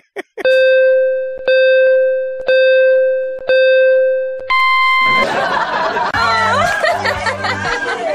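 Electronic beeps like a countdown: four identical steady tones about a second apart, each fading before the next, then a shorter higher-pitched beep. About five seconds in, a dense mix with a regular beat, consistent with music, takes over.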